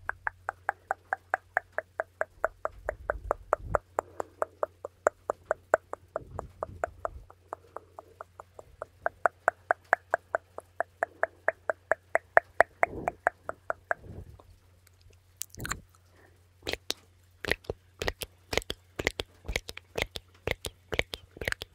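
Rapid 'tuc tuc' ASMR mouth sounds: quick tongue-and-lip clicks made close to the microphone, about five a second, each with a hollow pitch that sinks and then rises. They break off about fourteen seconds in and come back less evenly, under a steady low hum.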